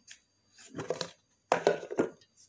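Clear plastic food-storage tub being handled and its lid taken off: two short plastic rustling, clattering bursts, the second louder.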